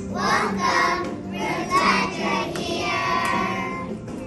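A class of young children singing a song together.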